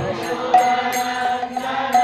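A man's voice chanting a devotional mantra in long held notes, with a pair of small brass hand cymbals (karatalas) struck about twice a second, each strike ringing on.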